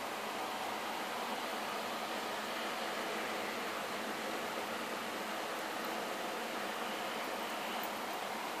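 Steady hiss from the recording microphone, with no other distinct sound.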